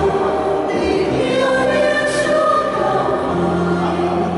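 Mixed church choir of women's and men's voices singing a Catholic hymn in harmony, the parts holding sustained chords that change together.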